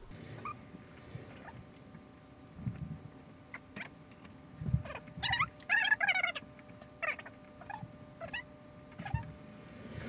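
Scattered clicks and knocks of RCA audio/video cables and a Y splitter being handled and plugged into a TV. About five seconds in comes a short run of high, wavering squeaks, the loudest sound here.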